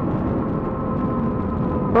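Motorcycle engine running at a steady pitch while cruising, a constant hum over a low rushing road and wind noise.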